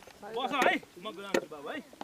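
People's voices, with a sharp knock like a chopping stroke a little past halfway.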